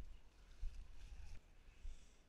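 Faint, irregular low thumps and light crackling of someone walking along an overgrown path through bushes, picked up by a body-worn camera's microphone.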